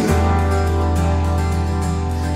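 Instrumental worship-band music between sung lines: a held chord over a deep, steady bass note, with no singing.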